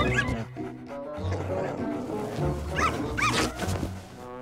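Cartoon puppies giving a few short yips over background music.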